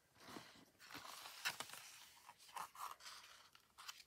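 Faint scraping and rustling of card stock being slid across and set down on a craft mat, with a few soft knocks.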